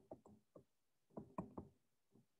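Faint knocks of a stylus tip on its writing surface during handwriting: a cluster of taps at the start and another about a second in.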